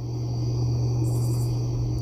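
Insects trilling steadily in thin high tones, with a short burst of rapid high chirping about a second in, over a steady low hum.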